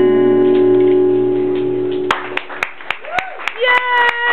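The last acoustic guitar chord rings out and is cut off about halfway through, then scattered audience clapping starts and a voice calls out near the end.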